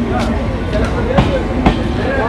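A train running fast past a station platform: a steady loud rumble with a few sharp clacks from the wheels.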